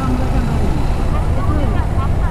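Steady low rumble of a motorcycle on the move, heard from the rider's seat: engine, tyre and wind noise mixed together, with a faint voice in the background.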